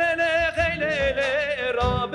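A male voice singing a Kurdish folk song in long held notes with heavy, wavering vibrato. It is accompanied by an oud, a bowed string instrument and a frame drum.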